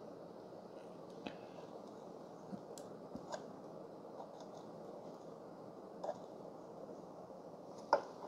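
Quiet tamping of ground espresso coffee in a 54 mm portafilter basket with a hand tamper: a few soft clicks and crunches against a faint hiss, and a sharper click just before the end as the tamper comes away.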